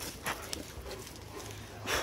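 Quiet scuffs of several Cane Corsos' paws walking on dirt and gravel: a few soft steps.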